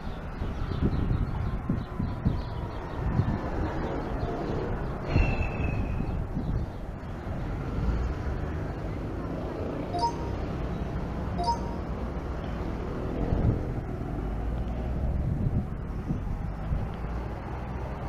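Indistinct voices over steady low background noise. A short high chirp comes about five seconds in, and two short pitched blips about a second and a half apart come near the middle.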